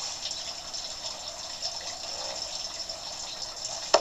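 Steady rush of running water from a backyard pond. A single sharp knock comes near the end.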